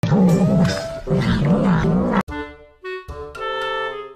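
A cat growling loudly, its pitch wavering up and down. It cuts off suddenly about two seconds in, and a keyboard melody takes over.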